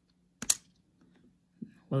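A sharp click as a flat flex-cable connector pops off its socket on a MacBook Pro logic board, with a fainter click about a second later.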